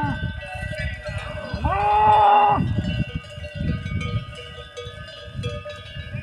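Bells on grazing cattle ringing and clanking on several pitches. A cow gives one long moo about a second and a half in, lasting about a second.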